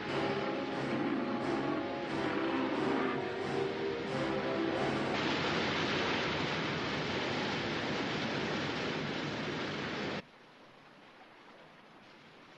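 Dramatic orchestral score over the steady rush of a waterfall. From about five seconds in, the roar of the water takes over. About ten seconds in it cuts off abruptly, leaving only a faint hiss.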